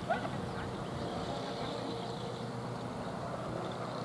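Steady, low open-air background noise, with a brief faint call right at the start.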